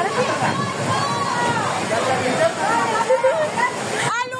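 Several people shouting and calling over one another, over the steady rush of fast-flowing floodwater.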